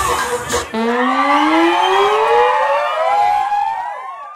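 Cheering and music cut off abruptly under a second in, and a loud rising sweep takes over: several tones glide upward together for about three seconds, then fade out at the end.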